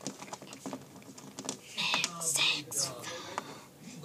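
Light clicks and ticks of a small metal charm and charm bracelet being handled at the wrist, followed about halfway through by a child's soft, whispery voice.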